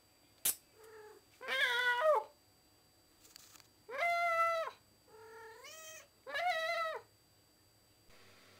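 Domestic cat meowing repeatedly: about five drawn-out meows, each under a second long, three of them loud and two softer. There is a sharp click about half a second in.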